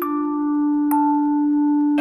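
Background film score: a sustained, bell-like chord held steady, with a new higher note struck about a second in.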